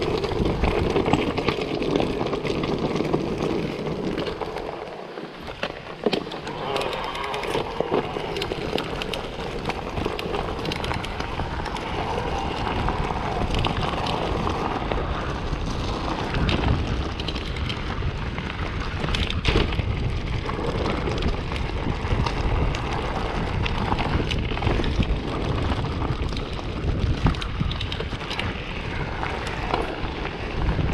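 Mountain bike rolling over a stony dirt and gravel trail: tyres crunching over loose stones, with frequent knocks and rattles from the bike over bumps, under a steady rush of wind on the microphone.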